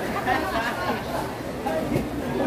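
Indistinct chatter of several people talking among the clothing stalls, with no clear words.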